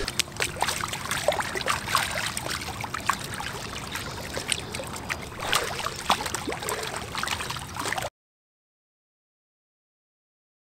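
Pool water splashing and sloshing as a swimmer treads water with an eggbeater kick, with many small irregular splashes. It cuts off suddenly about eight seconds in.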